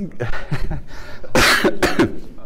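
A man coughs: a loud cough about one and a half seconds in, followed quickly by a shorter second one.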